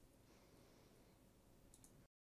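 Near silence: faint room tone, with a few faint clicks near the end.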